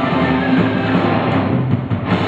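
Live rock band playing: electric guitars and a drum kit, loud and dense, thinning briefly in the upper range near the end.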